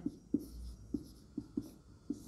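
Marker pen writing on a whiteboard: faint short strokes with light taps as each letter is formed.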